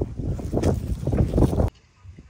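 Wind buffeting the microphone outdoors: a loud, gusting rumble that cuts off abruptly near the end.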